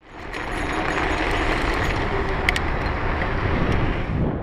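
Steady road and traffic noise heard from a bicycle on a city street, fading in at the start, with a short sharp click about two and a half seconds in.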